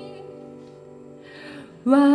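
Acoustic guitar chord ringing on and fading between sung phrases, a short breath, then a woman's singing voice comes back in near the end with a note that slides upward.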